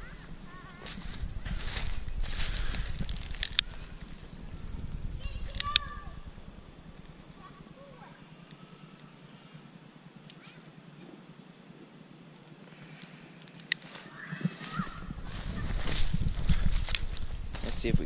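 Wind gusting on the microphone in low rumbling surges, strongest at the start and near the end with a lull in the middle. A few sharp single clicks come from a long-nosed butane utility lighter being sparked at the wood.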